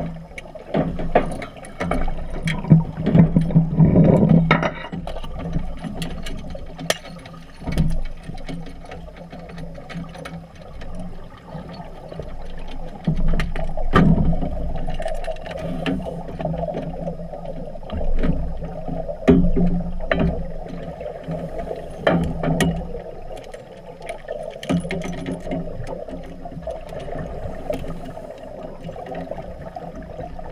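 Muffled underwater sound of a scuba diver fitting metal cross-brace tubes to a staging leg: sharp metal clicks and knocks scattered throughout, over a gurgling rumble of exhaled bubbles that swells every few seconds.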